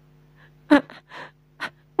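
A storyteller's voice gives a short startled gasp, 'ha!', followed by a breathy exhale and a brief mouth sound. It acts out a character being suddenly startled.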